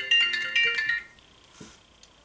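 A mobile phone ringtone, a quick marimba-like melody of short bright notes, which cuts off about a second in as the phone is silenced.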